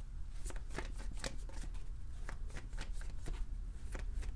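A tarot deck being shuffled by hand: an uneven run of short card flicks and slaps, about three or four a second.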